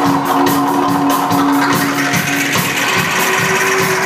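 Live rock band playing an instrumental passage: a held, droning note that steps up in pitch a little past halfway, over a steady, evenly ticking percussion beat.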